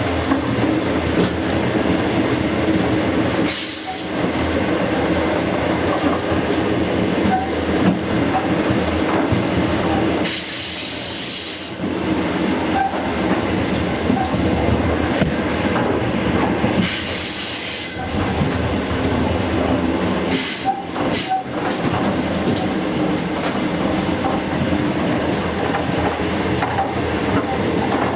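Passenger train running at speed, heard from inside the carriage: a steady loud rumble of the wheels on the rails, with short stretches of high-pitched hiss or squeal three or four times.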